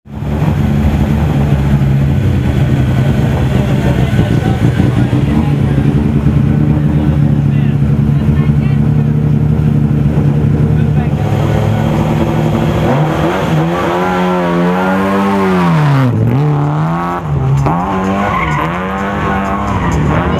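Lada 2105 rally car's four-cylinder engine running steadily at a fast idle, then revved hard up and down again and again as the car drives off about two-thirds of the way in, with a deep drop in revs shortly after and more rev swings near the end.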